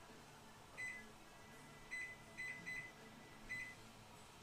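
Microwave oven keypad beeping as its buttons are pressed to set a timer: five short, same-pitched beeps, unevenly spaced.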